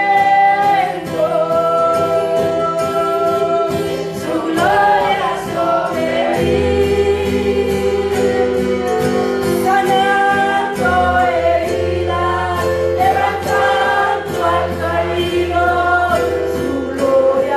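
A woman singing a Spanish-language worship chorus into a microphone, holding long notes, backed by acoustic guitar and keyboard. A low bass line from the keyboard comes in about six seconds in.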